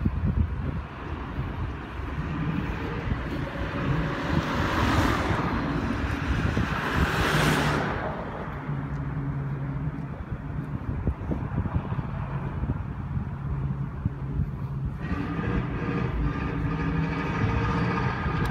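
Street traffic: vehicles pass by, the two loudest swelling and fading about five and seven and a half seconds in, followed by a steady low engine hum.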